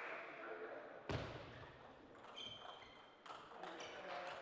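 Table tennis rally: the ball clicking off the paddles and the table in quick succession, with a sharp thump about a second in and a couple of short high squeaks among the later hits.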